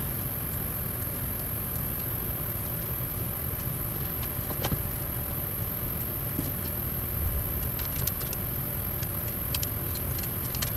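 Steady low room rumble with a faint high hiss, and a few light scattered clicks and taps from sticker sheets and paper being handled on a planner.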